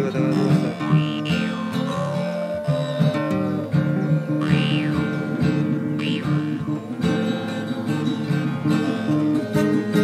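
Acoustic guitars strummed in a steady accompaniment, with a harmonica holding a melody over them and sweeping its tone up and down under cupped hands a few times.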